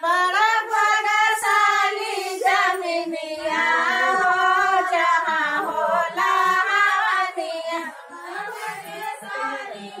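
Women's voices singing a havan song, a Hindu devotional folk song for the fire ritual, close to a microphone. The singing starts suddenly at the beginning and carries on.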